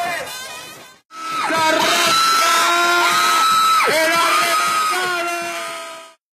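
Intro soundtrack: a voice calling out in long held notes over music, with a couple of downward swoops in pitch, fading out near the end.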